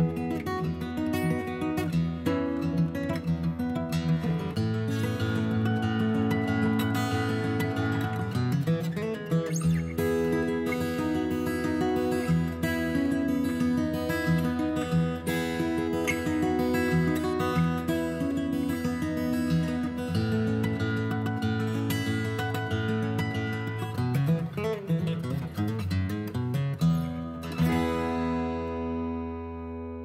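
Background music of acoustic guitar, strummed and picked. It ends on a final chord that rings out and fades near the end.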